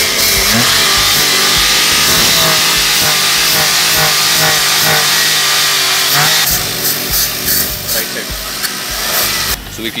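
Aerosol throttle body cleaner sprayed through its straw into a car's throttle body: one long, steady hiss for about six and a half seconds, then shorter broken spurts until near the end.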